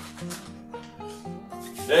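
Background music in a gap between speech: a run of single notes, each held briefly before stepping to a new pitch.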